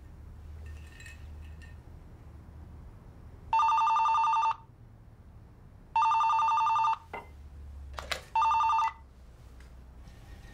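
Telephone ringing three times, each ring a rapid electronic warble about a second long, the third cut short at about half that length.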